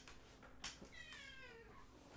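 A cat's faint meow, drawn out for about a second and falling in pitch, about a second in, after a light click.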